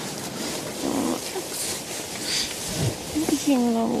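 Steady blowing wind like a blizzard, with a short voice-like sound that slides down in pitch near the end.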